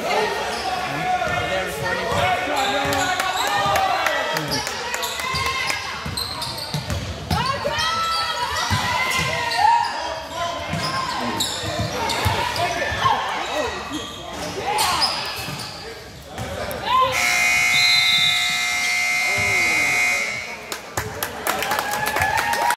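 Gym basketball play: a basketball bouncing on the hardwood and people calling out, with a hall echo. About 17 seconds in, the scoreboard buzzer sounds one steady tone for about three and a half seconds, signalling the end of the half.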